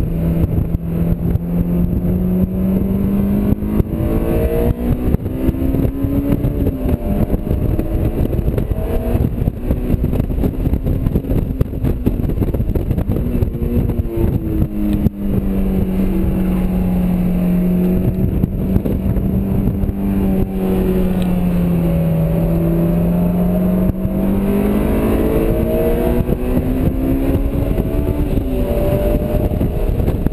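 Honda S2000's four-cylinder engine heard from inside the cabin while the car is driven hard on track. Its pitch climbs, holds steady and dips with the throttle, with sharp drops about a quarter of the way in and again near the end, over heavy wind and road noise.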